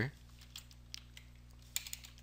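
A few faint keystrokes on a computer keyboard, with a small cluster of clicks near the end, over a steady low electrical hum.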